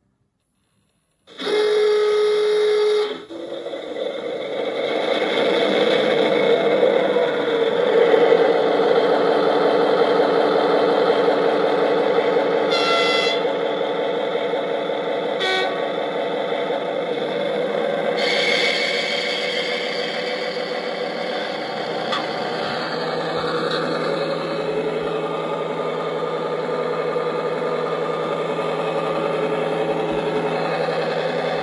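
Sound decoder in a model diesel locomotive (ESU LokSound XL V5 in a Märklin gauge 1 SJ T43) playing through its loudspeaker: a horn blast of about two seconds, starting about a second in, then the diesel engine sound starting up and building over a few seconds. It runs loudly with two brief tones near the middle, then settles into a steadier idle for the last several seconds.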